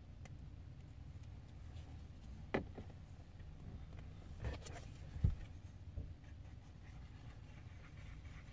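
Faint handling noises of a small plastic two-part epoxy package being worked with the hands: a few separate soft clicks and taps spread over several seconds, over a low steady hum.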